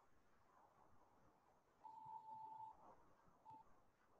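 Near silence on a video call, broken by a faint, steady electronic beep-like tone lasting under a second about two seconds in and a shorter blip of the same pitch near the end.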